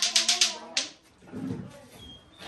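A quick, even run of sharp clicks, about nine a second, with a voice under it; the clicks stop just under a second in.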